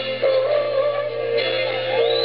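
Live rock band playing with a voice singing held notes, heard from the audience.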